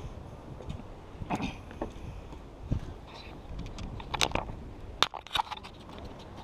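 Handling noise from an action camera as it is moved about: scrapes and a few sharp knocks and clicks, the strongest about four to five seconds in, over a low rumble of wind on the microphone.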